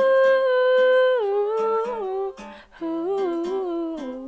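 A female voice singing a long held wordless note, then stepping down in pitch and finishing on a short wavering run, the close of a sung pop chorus line.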